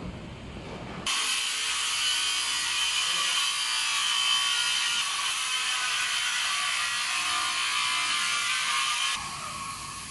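Steady, high-pitched mechanical noise of construction work, with a hissing, rasping texture and little low end. It cuts in abruptly about a second in and cuts off abruptly near the end.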